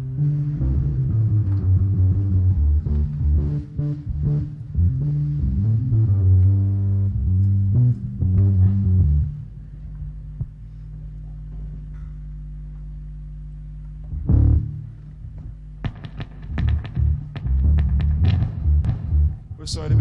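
Low electric guitar notes picked out through a loud amplifier, over a steady amplifier hum: one run of notes, a single note near the middle, then more notes near the end. The guitar is being checked for tuning between songs.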